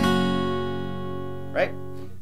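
Acoustic guitar strummed once with a pick on an open E chord shape, capoed at the second fret, all the strings left ringing and slowly fading.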